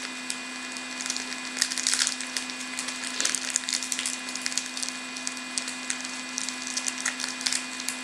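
Trading-card pack wrapper crinkling and crackling in irregular bursts as fingers pick and tear at it. The pack is a stubborn one to get open.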